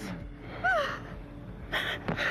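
A person's sharp gasp near the end, preceded about halfway by a brief rising-and-falling vocal sound.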